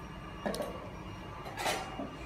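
Adhesive 3M tape being peeled off the frame that holds a resin printer's glass cover: a short click about half a second in and a brief scratchy rasp near the end.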